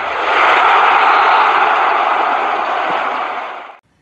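Edited-in sound effect for an animated title card: a steady rushing noise like a long whoosh. It swells slightly early on and fades out just before the end.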